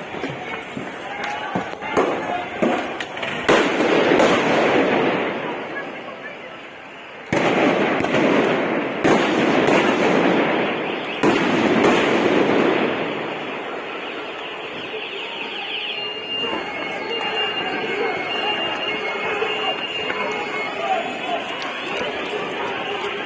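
Stun grenades going off in a street: a series of sharp bangs over the first dozen seconds, amid loud crowd shouting and noise. The bangs then stop and it settles to steadier crowd noise, with a short run of high beeps near the end.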